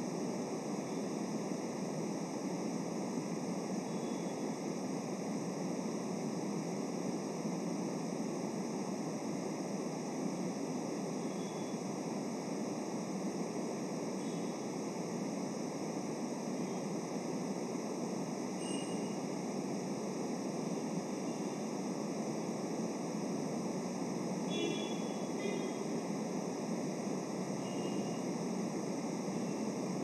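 Steady hiss of background noise from the live-stream audio, with a few faint brief sounds near the end.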